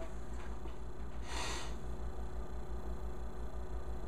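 Quiet room with a steady low hum, and one short breath through the nose about a second and a half in.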